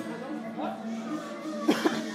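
Classical guitars playing quietly with a person's voice, and two short, loud sounds close together near the end.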